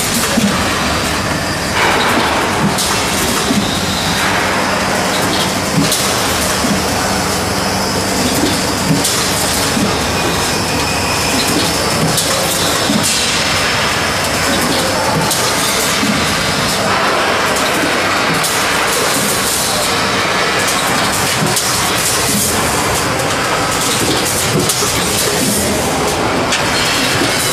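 Vertical form-fill-seal packing machine running: steady, dense mechanical noise with scattered clicks.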